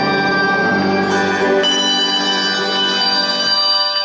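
English handbell choir ringing sustained chords, with fresh strikes about a second and a second and a half in; the notes die away near the end as the piece closes.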